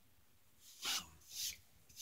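A man sniffing three times, short breathy rushes of air about half a second apart.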